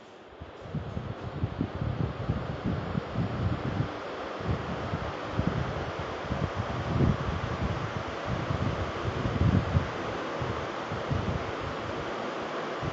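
Wind buffeting the microphone in irregular gusts over a steady hiss of outdoor street noise.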